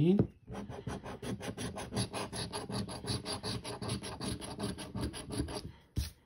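A metal coin scraping the latex coating off a scratch-off lottery ticket in rapid, even back-and-forth strokes, several a second, stopping just before the end.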